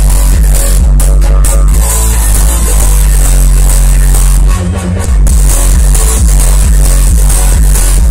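Loud electronic dance music from a festival sound system during a live DJ set, with heavy sustained bass. The bass briefly drops out about halfway through, then comes back in.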